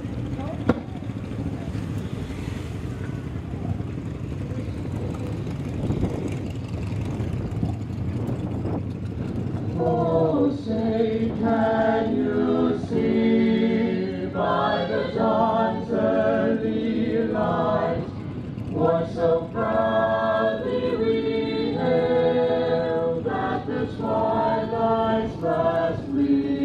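Singing with long held notes from about ten seconds in, over a steady background murmur of the crowd at an outdoor football field.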